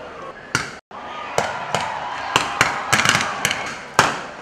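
Rifle shots in an irregular volley. One shot comes about half a second in, then after a brief dropout about a dozen more follow, coming faster and closer together toward the end.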